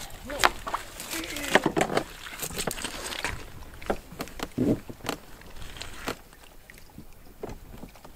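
Gear being loaded into an Old Town canoe: irregular knocks and clunks against the hull with rustling of packs. It is busiest in the first six seconds and quieter after.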